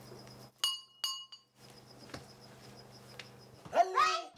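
Two bright, ringing clinks of a small hard object, about half a second apart, over a faint low hum. Near the end comes a short, louder sound that slides in pitch.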